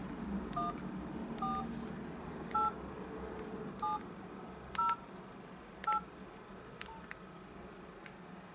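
Touch-tone (DTMF) keypad beeps from a Nokia mobile phone during a call: about seven short two-tone beeps, roughly one a second at uneven spacing, as digits of a top-up voucher number are keyed into an automated phone line.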